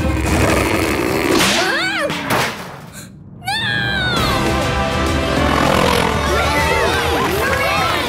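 Cartoon soundtrack: underscore music mixed with swooping, sliding sound effects or exclamations. The sound drops off briefly about three seconds in, then the music carries on.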